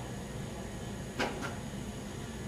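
Room tone with a steady low hum, broken by a single short click about a second in.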